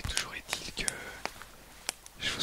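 Soft whispering close to the microphone, broken by a few short, sharp clicks.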